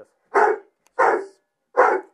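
Estonian hound barking three short barks, a little under a second apart: a young hound impatient to be taken out on the hunt.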